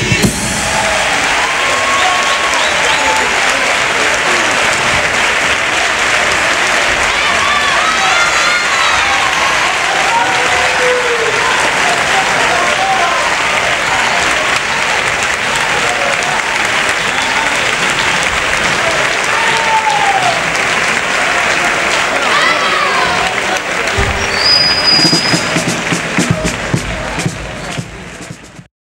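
Theatre audience applauding and cheering steadily, with scattered shouts and a short high whistle about three-quarters of the way through.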